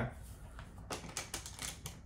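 A small brass clasp on a wooden box being worked open by hand, giving a quick run of light clicks in the second half.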